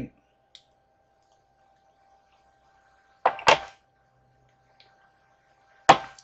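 Quiet handling of makeup products at a table: a small tick early, a short rustle about three seconds in, and a sharp click just before the end, over a faint steady electrical tone.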